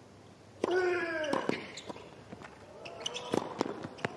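Tennis ball struck by rackets and bouncing on the hard court during a doubles rally: several sharp, irregular hits over the last two and a half seconds. A short vocal call is heard about half a second in.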